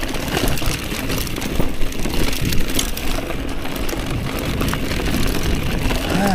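Mountain bike rolling down a stony dirt singletrack. There is a steady tyre rumble on the gravel, with many small clicks and rattles from the bike as it runs over bumps.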